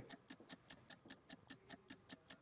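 Countdown-clock ticking sound effect: a faint, steady, fast tick at about five ticks a second, marking off the seconds of a one-minute sale countdown.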